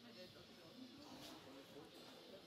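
Faint, indistinct voices of people talking in the background over quiet room tone.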